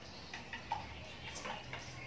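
Scissors snipping hair: a run of short, sharp clicks, about half a dozen, the sharpest about three-quarters of a second in.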